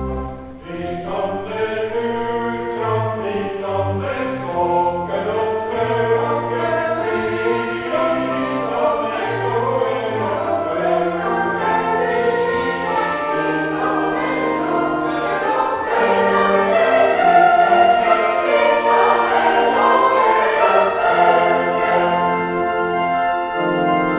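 A choir singing a Christmas motet, coming in about a second in just after a held organ chord breaks off, and growing somewhat louder in the second half.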